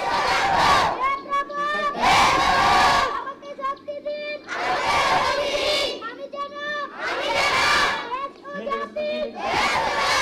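A large group of schoolchildren chanting an oath together in unison, line by line. Loud group phrases come about every two and a half seconds, with a single voice between them, as the children repeat each line after a leader.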